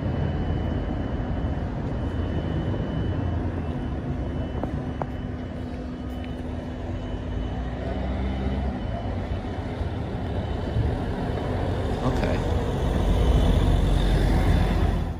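City street traffic: a steady rumble of passing vehicles, growing louder near the end.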